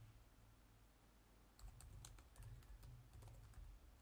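Faint typing on a computer keyboard: a few scattered key clicks, then a steady run of keystrokes from about a second and a half in.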